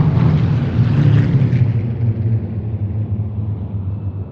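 A formation of Spitfires and Hurricanes passing overhead: the deep, steady drone of their piston engines, which thins and dies away somewhat in the second half.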